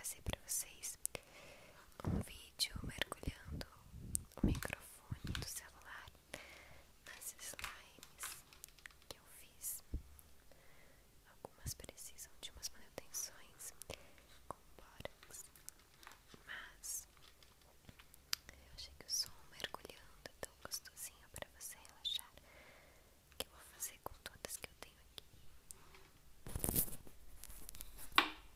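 Fingers squishing and pressing a grainy foam slime full of beads close to a phone microphone, making many small sticky crackles and pops.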